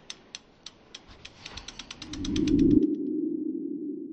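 Sound effects of an animated logo sting: a run of sharp ticks that speed up, a swelling whoosh a little over two seconds in, then a steady low hum that slowly fades.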